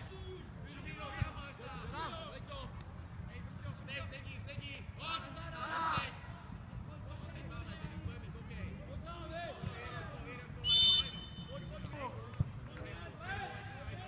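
Youth footballers shouting and calling to each other on the pitch during open play. About eleven seconds in comes a short, loud, high whistle blast from the referee, followed a second later by a single sharp knock.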